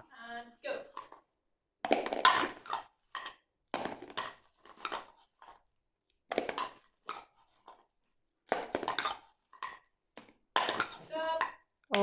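A spoon scooping wrapped sweets out of a bowl and tipping them into a clear plastic bowl, giving short, irregular clatters and rattles throughout.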